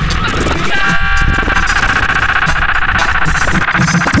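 Harsh electronic noise music: a loud, dense wall of processed sound layered from pornographic film audio and software loops, with a pulsing low end. A high, many-toned buzzing band comes in just under a second in and holds.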